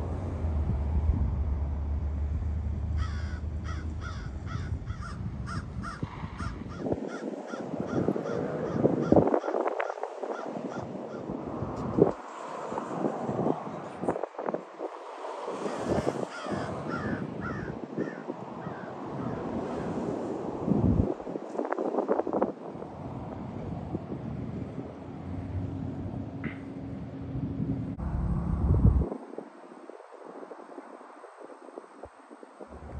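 Roadside sound of vehicles passing in swells, with birds calling repeatedly, a run of quick calls between about three and eleven seconds in.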